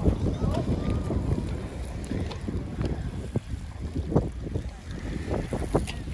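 Wind buffeting the microphone: a steady low rumble that rises and falls in gusts.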